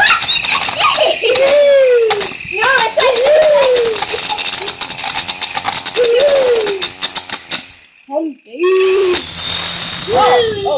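A child's voice making repeated rising-and-falling squeals over a loud, constant rattling noise. The noise drops out briefly about eight seconds in.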